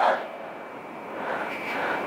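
A man's soft breathing as he works through glute bridges, a quiet breath noise that grows slightly toward the end, over a faint steady high whine.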